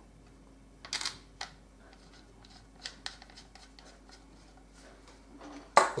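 Small metallic clicks and ticks as the gas cylinder lock and lock screw at the muzzle of an M1 Garand are handled and screwed up by hand. There are a few sharper clicks about a second in, then a run of faint light ticks, over a faint steady hum.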